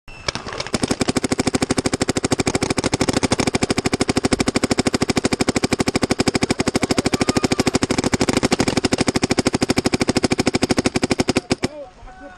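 Luxe X electronic paintball marker firing a sustained rapid stream, about a dozen shots a second, which stops suddenly shortly before the end.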